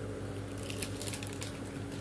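Faint rustling and crinkling of a clear plastic bag as a pillow packed inside it is handled and unwrapped, over a low steady hum.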